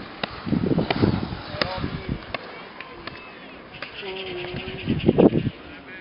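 People's voices calling out, with one long held shout about four seconds in.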